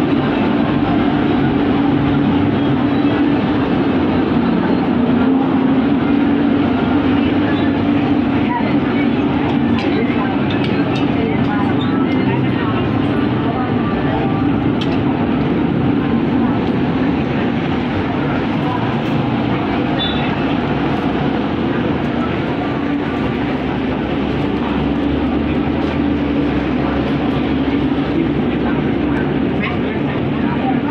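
Indoor shopping-mall ambience: a constant low hum with the murmur of voices in the background.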